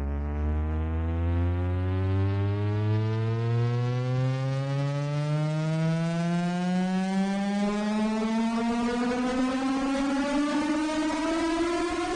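A low synthesizer drone gliding slowly and steadily upward in pitch, opening an electronic rock track.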